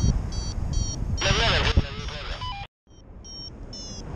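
Paragliding variometer beeping in short, slightly rising high tones, about three a second, the audio signal that the glider is climbing in lift. Wind rushes on the microphone underneath. In the middle the beeps stop while a louder rush passes, the sound cuts out briefly, and then the beeping resumes.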